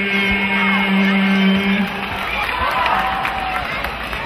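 Singers hold a long final note of a song, which stops just under two seconds in. A large crowd then cheers and whoops.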